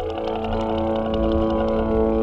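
Live electronic music from a modular synthesizer rig: a sustained droning chord of layered synth tones over a pulsing low bass, with faint fast ticks on top.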